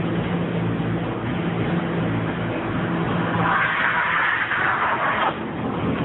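Car engine idling, a steady low hum. About halfway through, a loud rushing hiss lasts nearly two seconds and cuts off suddenly.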